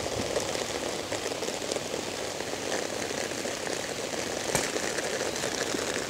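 Steady rain falling: a constant hiss with small scattered patters, and one sharp tap about four and a half seconds in.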